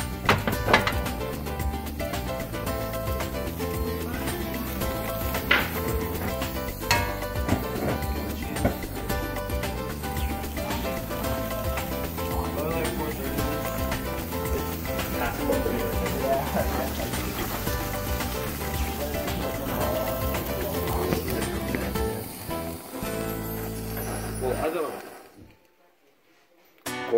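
Background music at a steady level that cuts off suddenly about a second before the end, leaving near silence.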